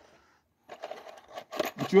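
Faint, short scraping and rustling handling noises for about a second, starting partway in, before a man's voice begins near the end.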